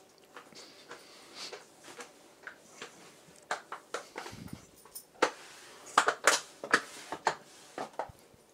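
Plastic mop worked over a floor, its head and handle knocking and clicking irregularly, loudest and most frequent in the second half.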